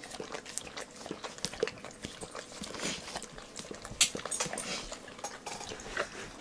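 A pit bull licking and smacking its mouth on sticky peanut butter: quick, irregular wet smacks and clicks, with a sharper click about four seconds in.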